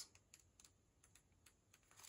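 Near silence, with a few faint, short clicks scattered through it.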